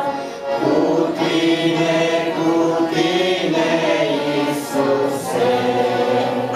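Several voices singing a Romanian Christian song together, as a small choir.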